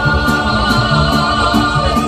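Mariachi band playing, with a long note held with vibrato that breaks off near the end, over the plucked bass line of a guitarrón.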